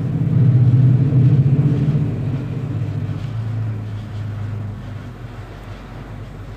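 A low rumble, loudest over the first two seconds and then slowly fading.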